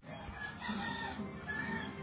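A bird calling, two short pitched calls over a steady noisy background.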